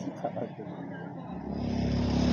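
A motorcycle engine approaching and growing louder over the second half, with faint voices at the start.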